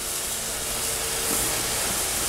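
Steady sizzling hiss from pans cooking on a gas stove, a pan sauce reducing as butter melts into it.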